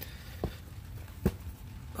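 Two soft, low thumps under a second apart, the second louder, over a low steady background rumble.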